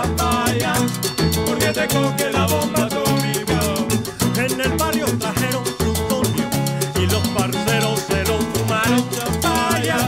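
Live band playing a cumbia-style Latin groove without vocals: a repeating electric bass line and a drum kit with cymbals under a wavering lead melody.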